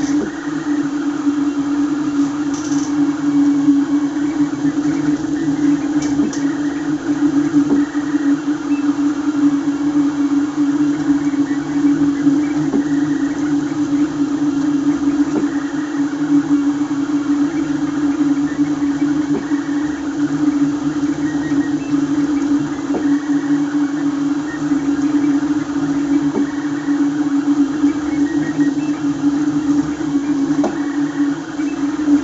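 BLV MGN Cube 3D printer printing at high speed: its stepper motors and cooling fan give a steady, loud hum and whir, with faint ticks from the print head's rapid moves.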